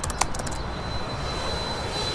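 Airliner passing overhead: a steady jet rush with a thin high whine that sets in about half a second in, after a single light click near the start.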